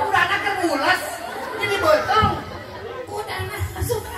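Speech: men talking into stage microphones over a PA system, with some background chatter.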